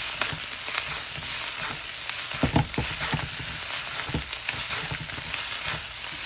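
Flat noodles being stir-fried in a hot non-stick pan: a steady frying sizzle as they are tossed, with a few sharp clicks of the utensil knocking against the pan.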